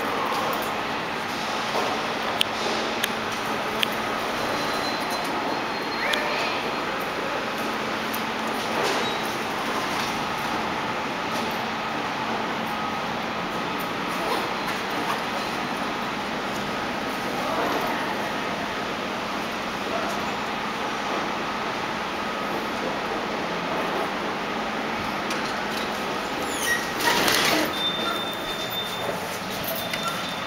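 Steady background noise while waiting at a Schindler elevator. Near the end the elevator's sliding doors open, louder than the rest, and a short high tone sounds.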